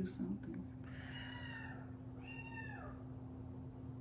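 A cat meowing twice, faintly: two drawn-out calls a second or so apart, the second falling away at its end.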